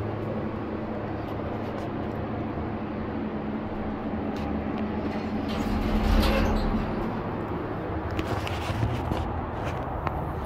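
Hydraulic elevator cab running with a steady low hum that fades out about five seconds in. Just after, the doors slide open with a louder low rumble, followed by footsteps on concrete near the end.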